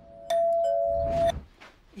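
Electronic doorbell rung by its push-button: a steady chime of two close tones, the lower one joining a moment after the first, lasting about a second before cutting off sharply.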